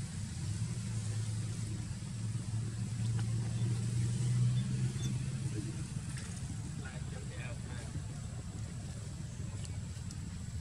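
Low engine rumble of a motor vehicle that swells to its loudest about four to five seconds in and then eases off, with faint voices in the background.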